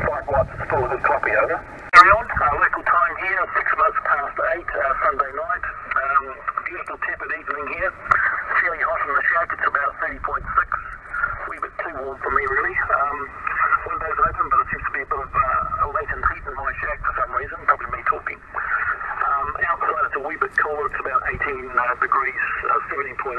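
Single-sideband voice of a distant amateur station heard through the HF transceiver's speaker: narrow, thin speech with static. A sharp click about two seconds in.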